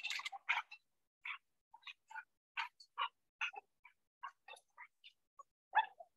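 Shelter dogs barking and yelping in short, irregular bursts, two or three a second, faint, while they wrestle in rough play.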